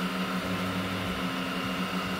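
Elegoo Neptune 4 Pro FDM 3D printer running a print: a steady hum of its stepper motors with a few held tones over the hiss of its cooling fans. A lower hum briefly joins about half a second in as the moves change.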